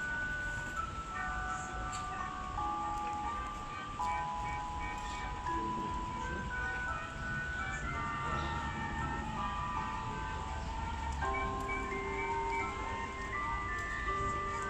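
A slow, chime-like melody of held, high notes played from the Gabriadze Theater clock tower during its puppet show, over a low crowd murmur.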